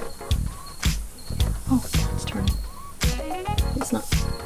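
Background music with a steady beat, about two strokes a second, and short pitched notes between them.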